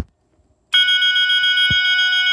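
A Johnson Controls BG-10 fire alarm pull station pulled with a sharp clunk. Under a second later a System Sensor MASS multi-alert sounder strobe starts sounding its continuous tone, steady and quite loud, with a brief dull knock partway through.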